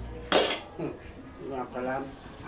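A short clatter of a utensil against a bowl, about a third of a second in, with a voice near the end.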